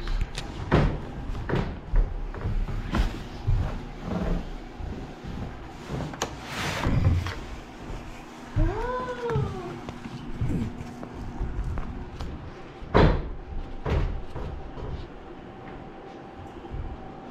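Irregular knocks and thumps from handling things and moving over wooden floors and boards, with a brief squeal about nine seconds in that rises and then falls in pitch.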